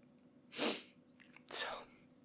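A man crying: two sharp, sniffling breaths, one about half a second in and another about a second later.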